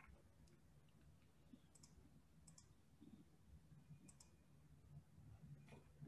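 Near silence with a handful of faint computer mouse clicks, spaced about a second apart.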